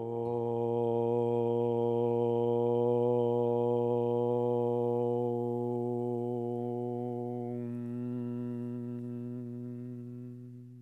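A single long chanted Om in a low voice, held on one steady pitch. About three quarters of the way through, the tone darkens as it closes toward a hum.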